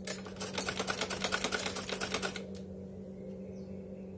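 Sewing machine stitching in a fast, even clatter for about two and a half seconds, then stopping.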